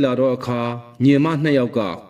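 Speech only: a man's voice speaking with some drawn-out syllables.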